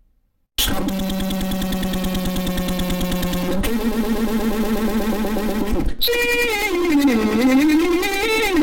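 Loud synthesized yell, held as one long tone that jumps up in pitch about three and a half seconds in, breaks off briefly near six seconds, then wavers up and down.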